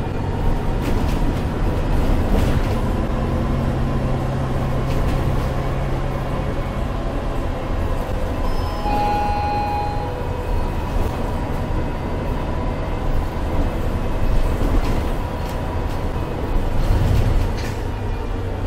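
Interior sound of a MAN A22 Euro 6 city bus with a Voith automatic gearbox under way: a steady engine and drivetrain drone mixed with road noise. The low engine note holds, then drops about eight seconds in, and a brief high tone sounds about nine seconds in.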